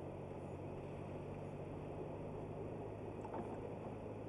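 A car's engine and road noise heard from inside the cabin: a steady low drone with a faint tick about three seconds in.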